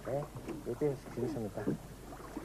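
A person's voice in a few short bursts that the recogniser did not pick up as words.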